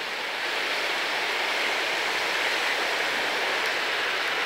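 Steady rush of a swollen river in flood: fast, turbulent floodwater flowing past.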